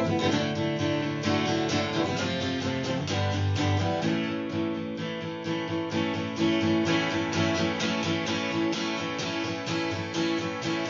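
Battered acoustic guitar strummed steadily in an instrumental passage, with no singing. The chord changes about two seconds in and again about four seconds in.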